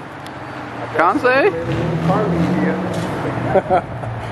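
Volkswagen Golf hatchback engine pulling away on a wet street, a steady low rumble that swells about two seconds in as it accelerates. People's voices call out over it about a second in and again near the end.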